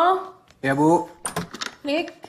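A person's voice speaking a few short phrases, with a few light clicks between them.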